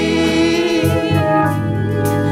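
Live gospel singing: a man's lead voice holding long notes, with backing voices and a steady low accompaniment underneath.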